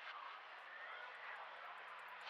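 Quiet, steady airy noise with a faint low hum: the ambient opening of a chillout track before any instruments enter.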